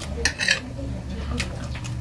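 Fingers working rice on a metal plate, clinking and scraping against it: a quick cluster of clicks about half a second in and a single click a little past the middle, over a steady low hum.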